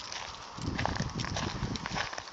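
Footsteps crunching on a gravel road shoulder, irregular short crunches, with a low rumble on the phone's microphone coming in about half a second in.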